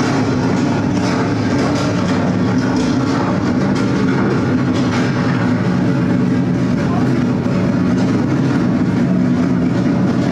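Live ambient electronic music: a steady, dense drone of held low tones over a rumbling, noisy texture with faint clicks, without a beat.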